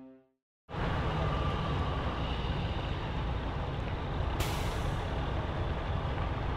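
Semi-truck diesel engines idling with a steady low rumble. A sudden air hiss begins about four seconds in, an air brake releasing. A short tail of music ends just before the rumble starts.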